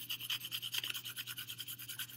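Colored pencil shading on paper: rapid, even back-and-forth scratching strokes, several a second, faint.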